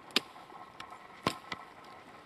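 Work Tuff Gear Campo knife, a fixed blade in SK85 steel, chopping at the limbs of a green pine: a few short sharp strikes, the loudest just after the start and two more a little past a second in.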